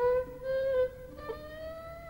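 Violin playing a Burmese melody: sliding notes in the first second, then a softer held note that rises slightly in pitch.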